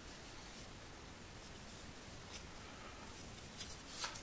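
Faint handling noise from small plywood blocks with plastic pipe stubs being moved and set on a workbench, with a few light taps near the end.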